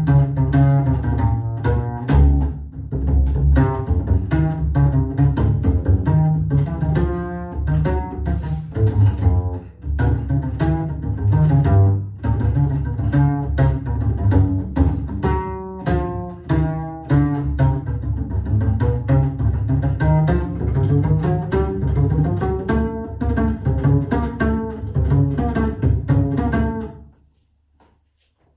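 Solo upright double bass played pizzicato: a continuous line of quick plucked notes, a written bass part that doubles the big band horns, taken a little under tempo. The playing stops about a second before the end.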